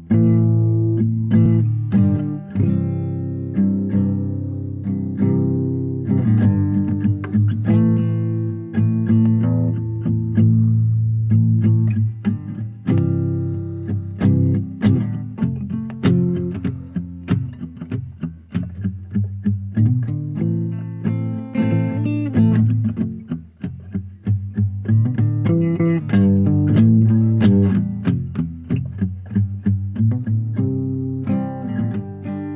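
Guitar playing: a continuous run of plucked notes and chords, each ringing and dying away, over strong low notes.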